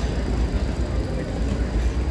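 Busy city street ambience: faint voices of passers-by over a steady low rumble.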